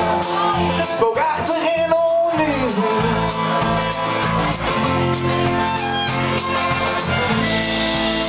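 Live folk-rock band playing an instrumental passage: strummed acoustic guitar with fiddle and electric guitar over a steady low end. A sliding melody line stands out in the first couple of seconds before the band settles into sustained chords.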